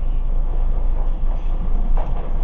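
Steady rumble of a moving songthaew (pickup-truck baht bus), its engine and road noise heard from inside the covered rear passenger compartment.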